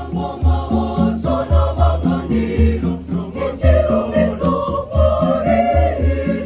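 A mixed school choir singing, over a strong low beat that comes about once a second.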